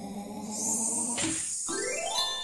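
Sound effects of a children's letter-tracing app as the letter S is drawn: a steady musical tone, a brief sparkly hiss midway, then a rising whistle near the end that leads into a chime as the letter is completed.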